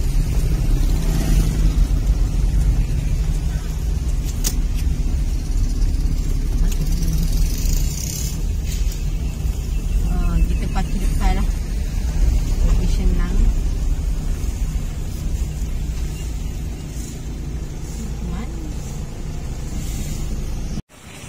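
Steady low rumble of a car driving slowly, with faint voices mixed in.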